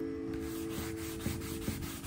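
A gloved hand rubbing wood stain into a sheet of luan plywood with a rag, a rough swishing in repeated wiping strokes. Background music with sustained notes plays under it.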